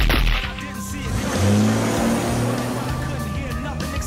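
A car speeding away, its engine revving with tyre noise, under background music, after a sharp bang right at the start.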